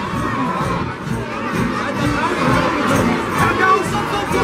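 A crowd of children shouting and cheering, many high voices overlapping.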